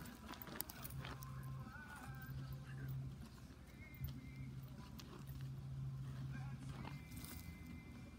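A Doberman digging in dry, stony dirt with its front paws: faint, quick, irregular scraping and scuffing of claws and scattering soil.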